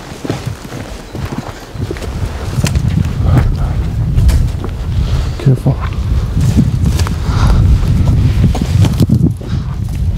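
Footsteps of people walking through dry weeds and brush, with scattered short rustles and snaps. Under them is a loud, uneven low rumble on the microphone that swells from about two and a half seconds in.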